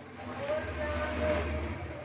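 Indistinct murmur of voices over a steady low hum, with a faint, rapid, evenly pulsing high chirp running underneath.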